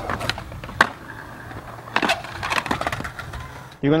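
Skateboard wheels rolling on concrete, with a sharp crack a little under a second in and another about two seconds in, then a few lighter clacks. These are the board being popped and landing on the concrete as a half cab is ridden.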